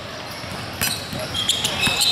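Basketball dribbled on a hardwood gym floor, a few separate bounces, in a large echoing hall. A high, steady squeal sets in about one and a half seconds in.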